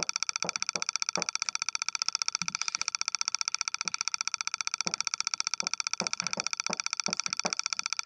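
Chalk on a chalkboard: irregular short taps and strokes as figures are written. Under them runs a steady high buzz with a fast flutter.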